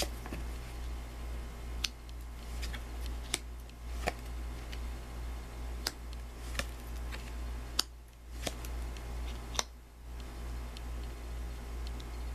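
Tarot cards being drawn off the deck and laid down on a cloth-covered table: a scattering of sharp clicks and snaps, about one a second, over a steady low hum.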